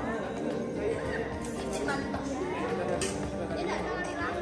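Several people chattering at once, with music playing in the background.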